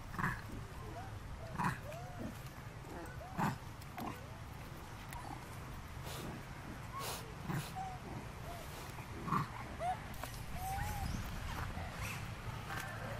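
Macaques calling: short grunt-like calls about every two seconds, with small squeaky chirps in between.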